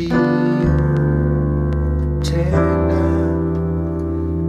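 Piano playing slow, sustained hymn chords, with a new chord struck near the start and another about two and a half seconds in.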